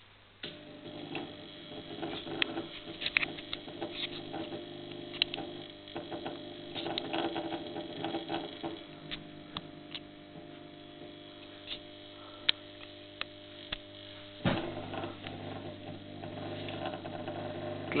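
Magnetic ballasts of two high-pressure discharge lamps humming steadily at mains frequency as the lamps start up, with irregular clicks and crackles throughout and a sharper click about fourteen seconds in. The hum is put down to the rectifier effect of the lamps during warm-up.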